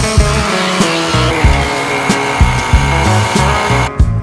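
Capsule coffee machine's pump running with a steady buzzing whine while it brews into a glass, over background music with a steady beat. The machine noise stops suddenly at the end.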